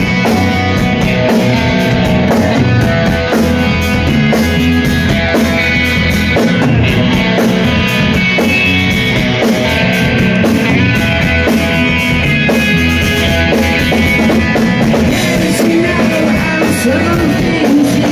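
Live rock band playing a song's instrumental intro: electric guitars, bass, keyboards and a drum kit, loud and steady, recorded from the crowd. The lead vocal comes in right at the end.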